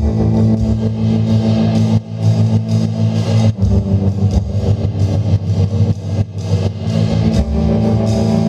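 Live rock duo playing an instrumental passage: electric guitar over a drum kit, with sustained low notes and steady cymbal strokes.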